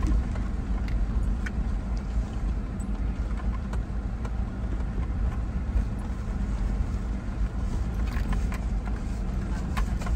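Steady low rumble of a running motor vehicle, with a few faint light clicks.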